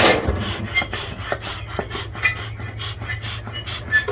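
Bee smoker being worked: rasping puffs and rustle from its bellows, the loudest right at the start, over a steady low rumble of wind on the microphone.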